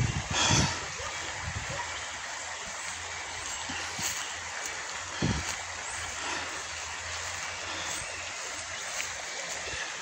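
Shallow river water running over rocks: a steady, even rushing hiss.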